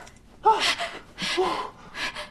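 A woman's startled gasps: two short, breathy voiced cries of alarm, the second a drawn-out "oh".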